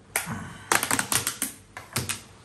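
Rapid run of light clicks and clatters from food containers being handled on a wooden table: one click near the start, a quick burst of about eight in the middle, and two more near the end.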